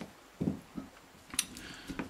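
Faint handling noises of a small metal RC helicopter tail gearbox being worked with a screwdriver as a screw is loosened: a soft knock about half a second in, a sharp click partway through and a few light ticks near the end.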